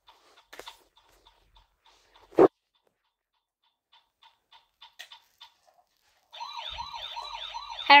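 Plastic toy fire engine being handled: light clicks and taps with one sharp knock about two and a half seconds in, then from about six seconds in its electronic siren sounds, a fast repeating up-and-down wail of about three sweeps a second.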